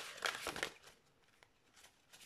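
A deck of cards being shuffled by hand: a quick patter of card flicks in the first half-second or so that trails off into near silence.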